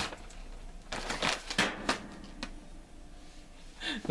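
Kitchen handling noises: a few short clicks and rustles of items being handled on the counter, clustered about one to two and a half seconds in.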